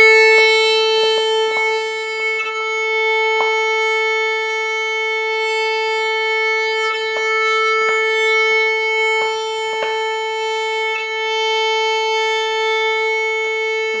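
Violin's open A string bowed as one long, steady note at A 441 Hz, played as a tuning reference. Faint catches at the bow changes every second or so.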